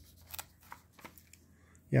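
Faint handling of a paper magazine's pages: a few short ticks and rustles as a hand moves over the page.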